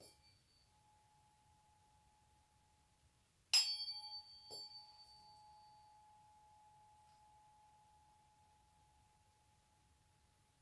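Metal tuning fork struck with a ball-headed mallet: a light tap at the start, then a loud strike about three and a half seconds in and another a second later. After that a single steady tone rings on and slowly fades, with a fainter lower tone beside it for a few seconds.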